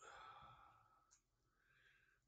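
A man's faint sigh, a soft breathy exhale lasting under a second, then near silence broken by one small click and a faint breath near the end.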